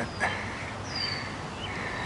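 A bird calls once with a thin, high whistle that slides down in pitch about a second in, over steady outdoor background noise. A short click comes just after the start.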